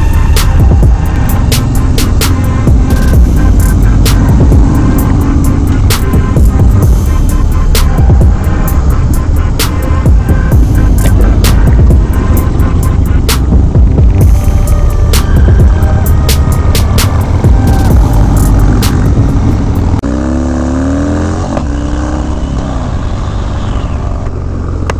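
Music with a heavy beat laid over sped-up motorcycle riding sound: engine rumble and wind. Near the end the music drops out and a Harley-Davidson V-twin is heard on its own, its pitch rising and falling as it revs.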